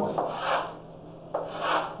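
Chalk scraping across a chalkboard in two strokes as lines are drawn, one at the start and one from about 1.3 seconds in.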